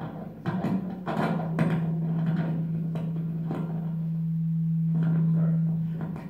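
A single steady low note held for about four and a half seconds, starting about a second in and swelling slightly before it stops just before the end. A few soft knocks and faint voice sounds come in the first second or so.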